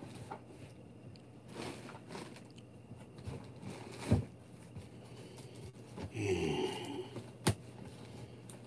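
Quiet handling sounds as a package is pushed under a chair, with sharp knocks about four seconds in and near the end, and a short strained grunt of effort as he bends down about six seconds in.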